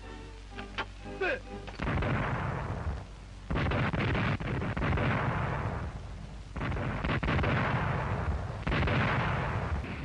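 Anti-aircraft gunfire on an old 1940s film soundtrack: four long, noisy bursts of rapid firing, each a few seconds long, beginning about two seconds in. A short snatch of music comes before the first burst.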